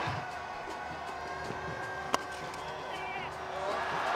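Stadium crowd noise with faint music in the background, and one sharp crack about two seconds in: a cricket bat striking the ball for a shot to the boundary.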